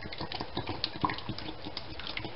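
Thick condensed soup sliding out of an upturned tin can onto a metal tray: a run of small, irregular wet squelches and clicks.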